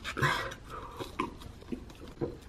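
Foil lid being peeled off a plastic cup of buttermilk: a short crinkly tear about a quarter second in, then a few small clicks and rustles as the cup is handled.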